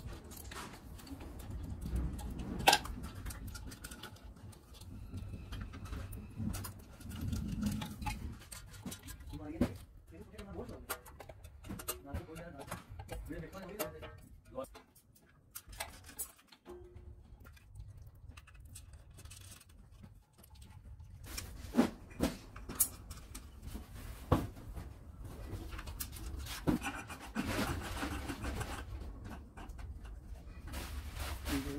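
Scattered clicks, taps and knocks of screwdrivers, screws and metal fan blades being handled as a ceiling fan is assembled by hand, over a low steady hum.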